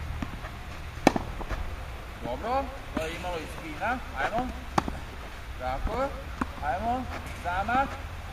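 Tennis ball struck by a racket: about four sharp hits spaced a second and a half to two seconds apart, the first the loudest, in a forehand and backhand hitting drill.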